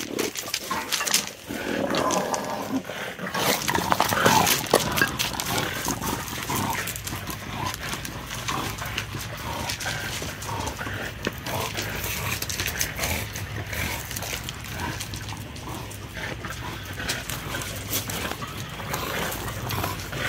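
Dogs moving about on loose gravel, stones crunching and clicking under their paws, with dog vocal sounds that are most pitched about one to four seconds in.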